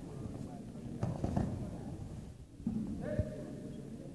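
A judoka thrown onto the mat: a dull thud of the body landing about a second in, over the steady murmur of the hall. A short voice call follows near three seconds in.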